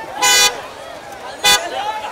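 Two car-horn toots, a longer one just after the start and a short blip about a second later, over the chatter of a crowd.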